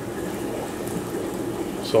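Water running steadily into a large water tank, over a low steady hum from a pump.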